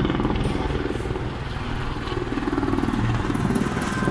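Military helicopter flying overhead: the steady, rapid beat of its rotor blades.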